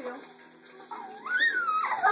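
A high voice gives one drawn-out cry starting about a second in, rising and then falling in pitch. It comes just after the word "you" is spoken at the start.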